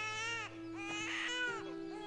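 An infant crying in repeated wailing cries, two within these seconds, each rising and falling in pitch, over long sustained notes of background music.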